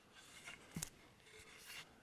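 Near silence with faint handling noise: soft rubbing of hands on a wooden guitar neck blank as it is turned over, with one light click a little before a second in.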